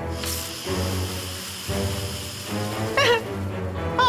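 Cartoon background score: sustained musical tones over a low pulse, with a brief whoosh just after the start and a short wavering, falling tone about three seconds in.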